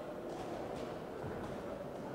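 Faint boxing-hall ambience: a steady low murmur with a few soft thuds from the boxers moving and exchanging in the ring.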